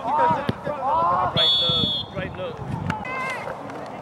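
Several voices calling and shouting across a soccer field, with a single short, high referee's whistle blast about a second and a half in.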